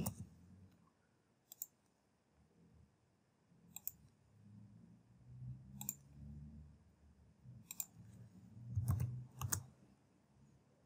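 Faint, single computer mouse clicks, about six of them a second or two apart, with a faint low rumble between the later clicks.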